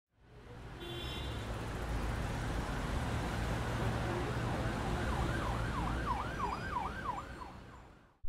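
Traffic noise with a steady low rumble, and about five seconds in an emergency-vehicle siren in a fast up-and-down wail, several sweeps in a couple of seconds. The sound fades in at the start and fades out at the end.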